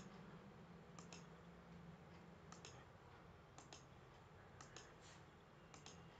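Faint computer mouse clicks, mostly in close pairs of press and release, roughly once a second, over a faint steady low hum.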